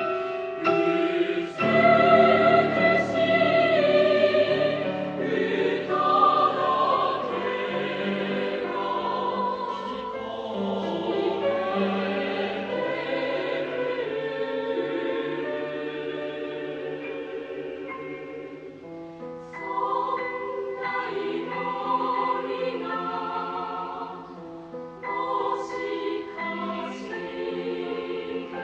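A choir singing in long held chords, with short breaks between phrases about a second and a half in, and again near 19 and 24 seconds.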